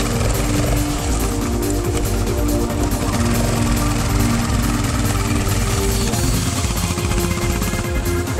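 Yamaha single-cylinder trail bike engine held at high throttle as the bike labours up a sandy slope, with background music over it.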